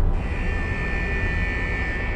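Suspenseful film score: a low rumbling drone with a high sustained tone that comes in just after the start and holds steady.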